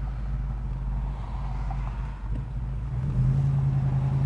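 A 502 cubic-inch big-block V8 crate engine running, heard from inside the car's cabin. It makes a steady low drone that grows louder about three seconds in.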